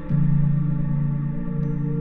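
Ambient sleep music of sustained, layered drone tones, tuned to 432 Hz and carrying a 7 Hz theta binaural beat. A new low tone comes in right at the start and holds, making the music briefly louder.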